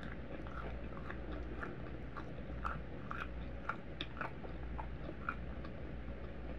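Close-miked chewing of a mouthful of Cap'n Crunch pancake, with a scatter of short wet mouth clicks and smacks.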